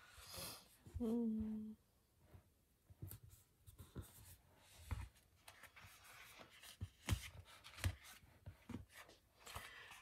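Paper sticker sheets and a sticker book being handled on a desk: soft rustles, light taps and small clicks as a page of the book is turned. A brief hummed 'mm' comes about a second in.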